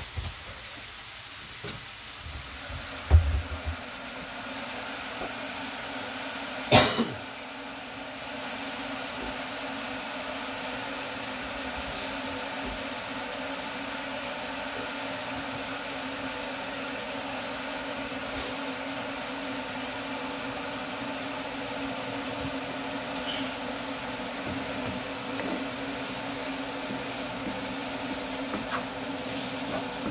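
Minced beef, onion and red pepper sizzling steadily in a frying pan, over a low steady hum. A low knock comes about three seconds in, and a sharp clack about seven seconds in.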